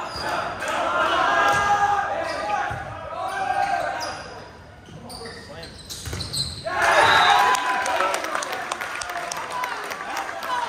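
Volleyball rally in a gym: players shouting, sneakers squeaking on the hardwood floor and the ball being struck, with a louder burst of shouting about seven seconds in.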